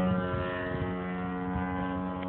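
Engine and propeller of a 2.5 m radio-controlled Extra 330S model plane in flight, a steady drone holding one pitch.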